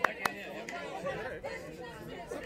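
Faint chatter of many young voices across an open pitch, with a single sharp clap shortly after the start.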